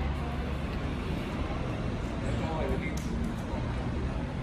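Urban background in a pause between songs: a steady low traffic rumble with faint voices of people nearby.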